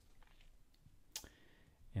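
A single sharp click about a second in, with a few fainter ticks, over quiet room tone.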